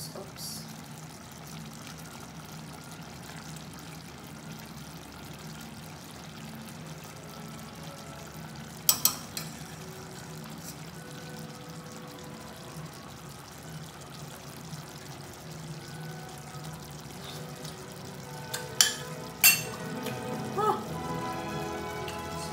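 Pork and coconut-milk stew simmering in a stainless steel pot, over a steady low hum. There is a sharp click about nine seconds in and a few more near the end.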